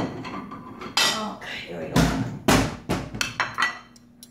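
Ceramic dinner plates and cutlery clattering on a granite kitchen counter as a plate is fetched and set down: a run of sharp knocks, the loudest two with a dull thud about two seconds in and half a second later.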